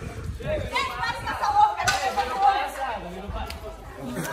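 Several young people talking and calling out at once, with a single sharp click a little under two seconds in.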